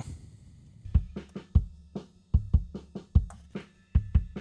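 Multitrack drum-kit recording played back from a DAW session: a kick, snare and hi-hat groove that starts about a second in.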